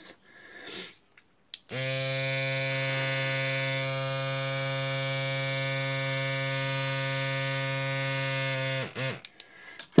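Small airbrush compressor running steadily while the airbrush blows air onto a nail tip to dry the paint. It starts about two seconds in and cuts off shortly before the end.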